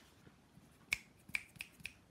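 Stiff sketchbook pages being turned by hand, giving four short, sharp paper clicks in the second half.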